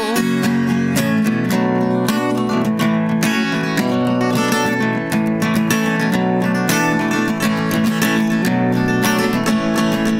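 Acoustic guitar strummed in a steady rhythm of chords, an instrumental break with no singing.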